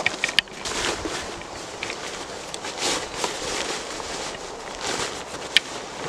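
Rustling and crinkling of a folded ground protection tarp being handled and pushed down into the bottom of a backpack, in irregular bursts, with one sharp click near the end.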